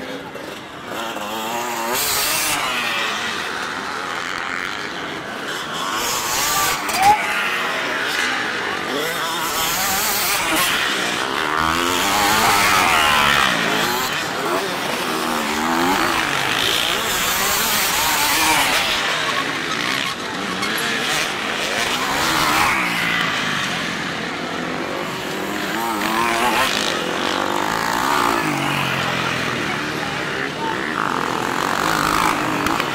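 Several off-road enduro motorcycles revving and running through a dirt corner one after another. Their engine notes keep rising and falling as they throttle on and off and pass close by. A brief sharp sound stands out about seven seconds in.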